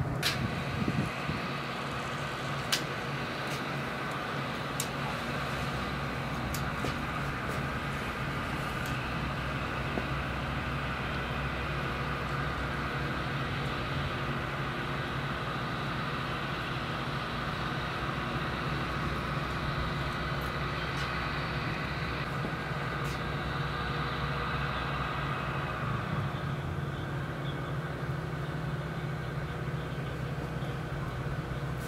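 A steady low mechanical hum, like a running motor, with a few light clicks in the first seconds.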